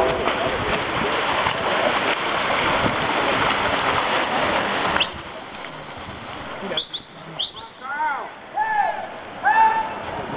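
Poolside spectators cheering over the splashing of backstroke swimmers racing. The din drops suddenly about halfway through, and near the end single high shouts follow one another less than a second apart.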